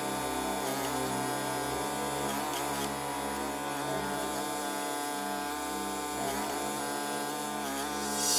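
Small gasoline engine of a Champion 27-ton log splitter running at a steady speed.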